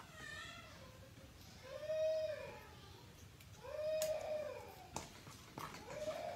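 A cat meowing three times, each drawn-out call rising and falling in pitch, about two seconds apart.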